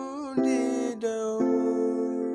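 Electronic keyboard playing a melody in F major with the right hand: sustained single notes, each giving way to the next about every half second, some sliding slightly into pitch.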